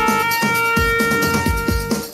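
Saxophone holding one long note over an electronic backing track with a steady kick-drum beat, the note breaking off right at the end.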